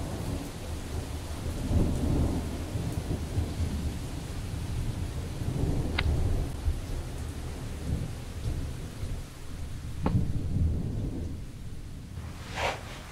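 Thunderstorm: low rolling thunder rumbles swelling and fading over steady rain. Two sharp clicks cut through, about six and ten seconds in.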